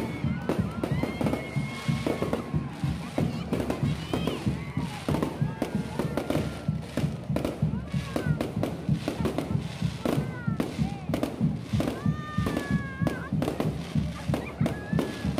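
Aerial fireworks bursting overhead: a dense, irregular run of bangs and crackles that goes on throughout.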